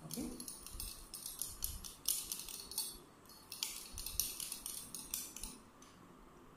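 Glass stirring rod clinking against the inside of a glass test tube in quick, irregular taps while copper sulphate crystals are stirred into water to dissolve. The clinking stops shortly before the end.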